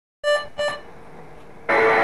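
Two short electronic beeps about a third of a second apart from a touchscreen media player, then music starting loud and abruptly near the end.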